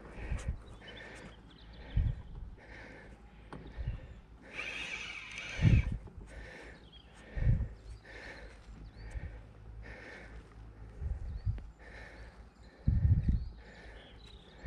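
Spinning reel being cranked while playing a hooked fish: a rhythmic whirr about every three-quarters of a second as the handle turns, with a longer stretch of it around five seconds in. Several low thumps are mixed in, the loudest near the middle and near the end.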